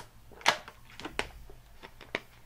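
Thin plastic water bottle crackling and clicking in a hand as someone drinks from it: a handful of sharp separate crackles, the loudest about half a second in.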